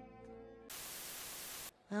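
Held tones of string music fade away, then a burst of even, static-like hiss lasts about a second and stops abruptly.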